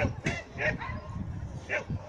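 A dog barking several times in short, sharp barks, typical of a dog barking as it runs an agility course.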